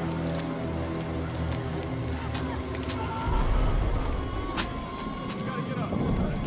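A film soundtrack mix: a sustained low music drone that gives way about three seconds in to a deep rumble and crackling noise, with one sharp crack in the middle and faint wavering cries.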